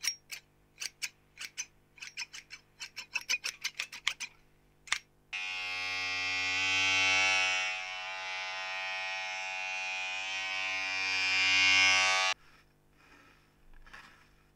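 Hair-cutting scissors snip close to the ears of a lo-fi 1974 AKG D99c binaural dummy-head microphone, a run of sharp snips that quickens about three seconds in. About five seconds in, an electric hair trimmer starts buzzing steadily for about seven seconds, swells louder twice, then cuts off suddenly.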